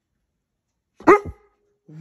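A Newfoundland dog giving a single short, loud bark about a second in.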